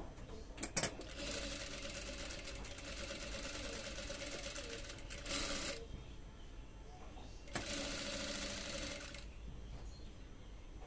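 Industrial flat-bed sewing machine stitching in short runs, with a steady motor whine under the rapid needle strokes: a sharp click about a second in, a run of about four seconds, a brief burst, then another run of about a second and a half near the end.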